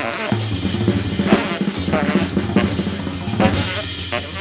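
Jazz ensemble passage dominated by a busy drum kit, with snare and bass drum hits coming thick and fast over a steady low bass line.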